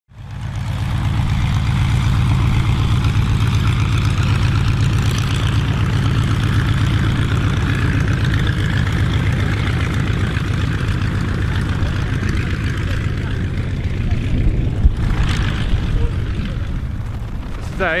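Boeing Stearman biplane's radial engine and propeller running steadily as the aircraft taxis, with a fast, even pulsing; the sound eases slightly in the last few seconds.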